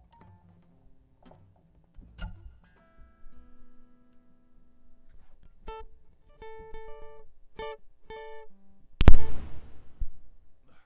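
Twelve-string acoustic guitar being tuned between songs: soft plucks and held notes, then single notes plucked again and again on the same pitches. Just after the nine-second mark comes a loud, sudden crash of sound.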